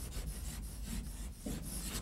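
Chalk scratching on a chalkboard as a word is written by hand: a run of short, quick strokes.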